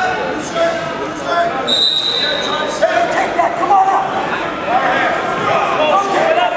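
Spectators' voices shouting and talking over each other in a gymnasium crowd at a wrestling match. About two seconds in, a steady high tone sounds for about a second.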